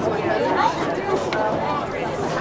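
Several people chatting at once, indistinct overlapping voices, with a few short clicks among them.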